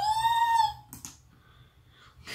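A woman's high-pitched squeal of delight, one drawn-out note that rises and then falls slightly over about a second, followed by a brief soft click.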